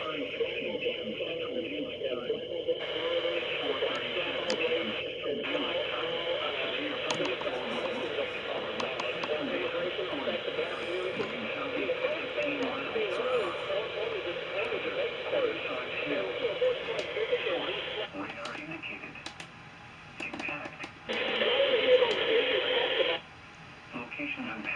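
A voice speaking through a television's speaker, thin and band-limited as heard from across the room, with a louder passage near the end.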